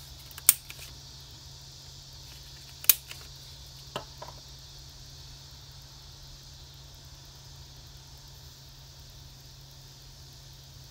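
Two sharp clicks of a small handheld paper punch cutting a snowflake from paper, about half a second in and again near three seconds in, then a lighter click about a second later. A steady hiss runs underneath.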